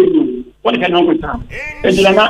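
Speech: a voice talking in quick phrases, with a short pause about half a second in and a brief gliding vocal sound near the end.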